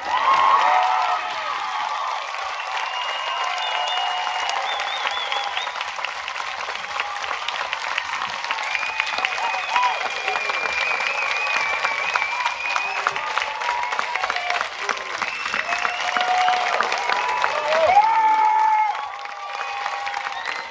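Theatre audience applauding, with shouts and cheers from the crowd over the clapping; the applause swells again near the end and then thins out.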